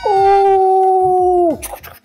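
A man's loud, long wailing cry, held on one pitch for about a second and a half, then dropping off.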